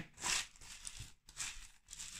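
A spatula stirring melted chocolate and chopped hazelnuts in a bowl: a few faint, short scraping strokes, the first a little louder just after the start.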